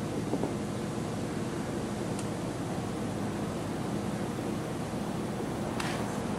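Steady outdoor background noise with a faint low hum and no distinct sound events.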